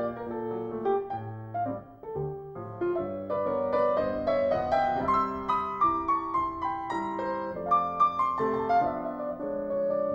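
Solo piano music accompanying a silent film, playing a busy run of notes over lower chords.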